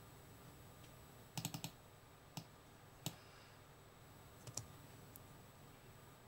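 Faint computer mouse clicks over near silence: a quick run of about four clicks about a second and a half in, then single clicks every second or so.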